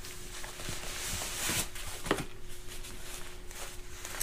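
Faint rustling of nylon fabric as down booties are pulled out of their stuff sack, with a few soft clicks.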